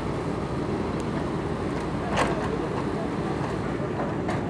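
Steady low rumble of ship engines heard from the deck, with one brief sharp sound about two seconds in.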